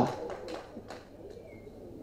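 A pause between declaimed lines: the end of a man's amplified voice dies away over about half a second, then low room noise with a brief faint high tone about halfway through.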